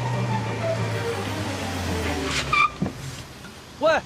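A car drives up and brakes to a stop, with a short, high tyre squeal about two and a half seconds in and a knock just after it.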